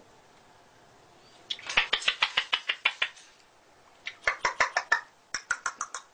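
Cockatoo making rapid runs of short clicking, chattering sounds in three bursts: a longer one about a second and a half in, then two shorter ones near the end.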